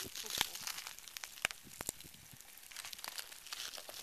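Pahoehoe lava crust crackling as molten lava pushes beneath it and the cooling rock skin cracks and shifts: faint, irregular sharp clicks and ticks, with two louder cracks about halfway through.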